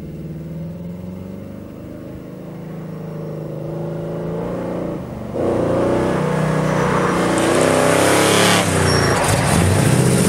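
1971 Dodge Coronet Custom's 400 big-block V8 coming closer, its note wavering up and down as the throttle is worked through a slalom. About five seconds in it dips briefly, then opens up sharply and grows louder.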